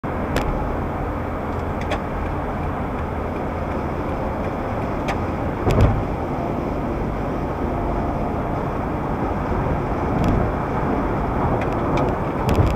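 Steady road and engine noise of a car driving, heard from inside the cabin, with a few light clicks and one louder thump near the middle.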